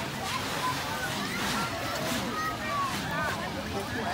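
Beach ambience: a steady rushing noise of wind and surf, with voices of other people talking in the background.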